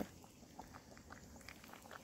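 Faint, soft chewing of a mouthful of beans and potatoes, with a few small mouth clicks.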